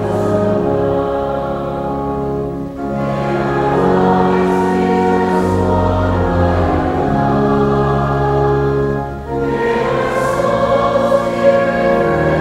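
Slow sacred choral singing with pipe organ accompaniment. The voices and organ hold long chords over a deep steady bass, and the harmony shifts about three seconds in and again near nine seconds.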